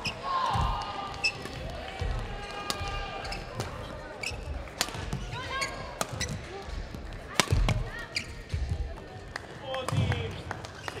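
Badminton rally: sharp racket strikes on the shuttlecock and squeaks of court shoes on the sports floor, echoing in a large hall. The loudest hit comes about seven seconds in.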